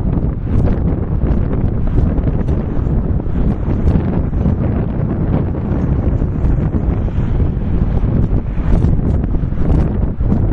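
Wind buffeting the camera's microphone: a loud, continuous low rumble that swells and dips irregularly, with no other distinct sound.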